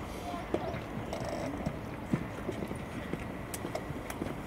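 Soft tennis ball struck by rackets: two sharp pocks about a second and a half apart, with lighter knocks and ticks between them.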